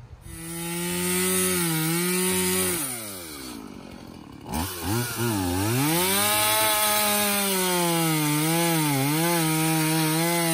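A small handheld power saw runs fast and steady, then winds down about three seconds in. It starts up again sharply a moment later and keeps running, its pitch dipping and wavering as it cuts under load.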